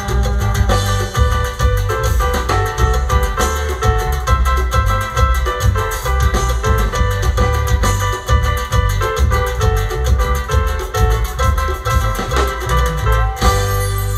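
Live Purépecha band music for dancing, with a steady drum beat under a bright melody line. The music stops suddenly near the end, leaving a low hum.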